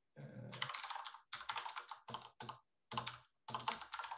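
Typing on a computer keyboard: short runs of keystrokes with brief pauses between them.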